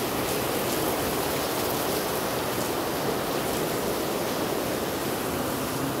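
A steady, even rushing noise with no pauses or rhythm, like rain or running water.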